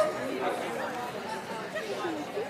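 Indistinct chatter of several voices talking at once in a large indoor hall, with no clear words.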